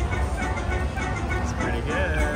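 Buffalo Gold slot machine playing its big-win celebration music with chiming coin sounds as the win meter counts up, over a steady low casino din.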